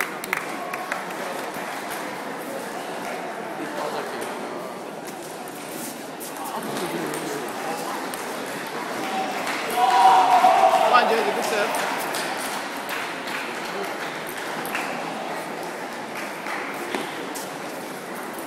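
Table tennis balls clicking off bats and tables, scattered sharp ticks from many tables, over the steady murmur of crowd chatter in a large sports hall. About ten seconds in a louder voice rises above the hubbub for a second or two.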